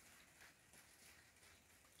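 Near silence, with a faint, even hiss of light rain just beginning to fall.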